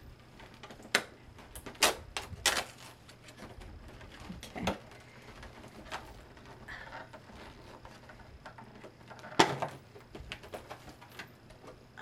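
Scattered sharp clicks and taps of a plastic advent-calendar box being handled as one of its small doors is opened, a few separate clicks with quiet between them, the loudest near the end.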